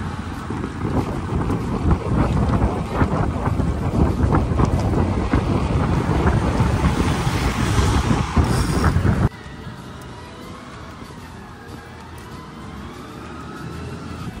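Wind buffeting the microphone of a phone filming from a moving bicycle: a loud, blustery noise, heaviest in the low end. It cuts off abruptly about nine seconds in, leaving a much quieter background with faint wavering tones.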